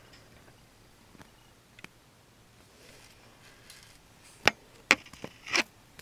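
Jewelry pliers and a small metal chain link being handled: a few faint clicks, then two sharp clicks about four and a half seconds in, half a second apart, and a short rustle just after.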